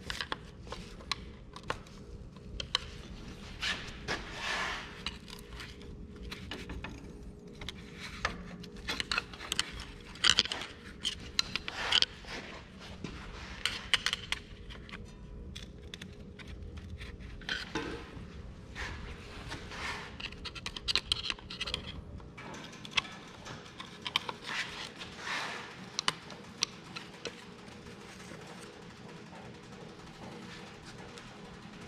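Steel pry tools scraping and clinking against an Oliver 1550 tractor's steering box housing as a cap is worked out of its bore, in irregular metallic clicks and scrapes.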